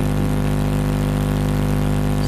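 A loud, steady electrical hum with a ladder of overtones, from the public-address sound system. It holds unchanged through the pause in speech.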